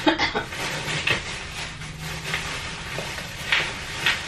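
Rustling and small handling noises from rummaging in a bag, with a cough about a second in.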